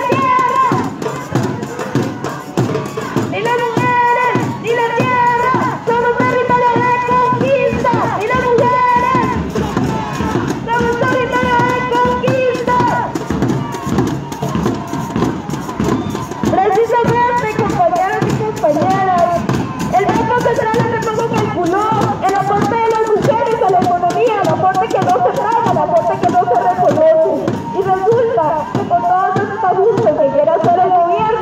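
Music with a voice carrying a melody: long held notes for about the first half, then a faster, wavering line that runs on without pause.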